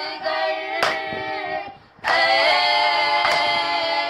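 Female voices chanting a noha, a Shia lament for Imam Husayn, in unison, with a sharp slap of hands on chests (matam) about every second and a quarter. The chant breaks off briefly near the middle and resumes.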